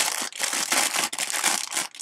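Clear plastic bag crinkling irregularly as the plastic model-kit sprue sealed inside it is handled and turned over.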